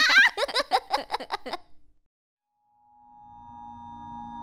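Cartoon babies giggling and laughing for about a second and a half, then a brief silence. Then a sustained, steady musical drone of background score slowly fades in.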